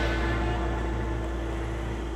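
Background music holding a steady low drone and one sustained tone, fading slightly.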